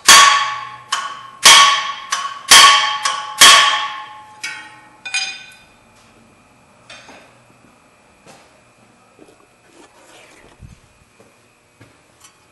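A hammer strikes a wrench on the fan clutch nut to snug the clutch tight onto the water pump shaft. There are four hard, ringing metal blows about a second apart, then a few lighter knocks.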